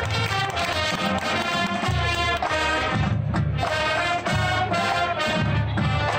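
Marching band playing a field show: brass chords held and changing every second or so over a deep bass line and percussion.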